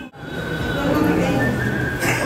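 A sudden break in the sound at the start, then voices with a held, high whistling tone in the second half.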